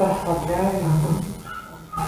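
A woman's voice speaking, trailing off about one and a half seconds in.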